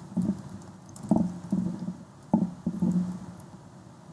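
Typing on a laptop keyboard, faint keystrokes, with three short, low, steady voice sounds about a second apart that are louder than the typing.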